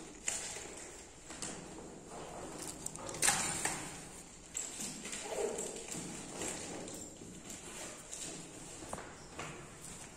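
Rustling and clicking of a backpack being handled and rummaged through, with scattered light knocks and a louder scrape about three seconds in.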